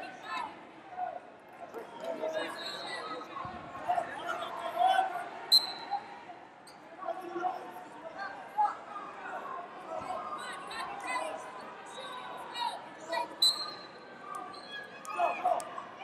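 Background voices of people calling out and talking across a large gym hall, with two brief high squeaks, one about five seconds in and one near the end.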